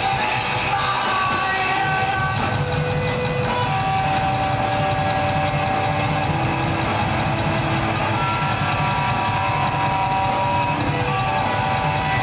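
Punk rock band playing live: electric guitars and a drum kit, with a fast, even drum beat coming in about two seconds in under held guitar notes.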